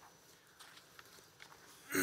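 Quiet room tone with a few faint clicks, then a man clears his throat near the end.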